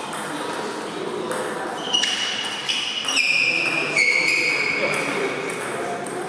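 Table tennis balls clicking off bats and tables across a large hall. A run of sharp hits starts about two seconds in, each leaving a lingering high ringing tone. People talk underneath.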